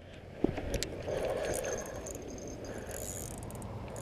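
Fishing rod and reel being handled: a few faint clicks in the first second, then a soft mechanical rattle.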